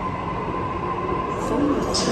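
Sydney Trains double-deck electric train moving slowly along the platform, a steady running hum from its motors and wheels that grows louder toward the end. A public-address voice starts near the end.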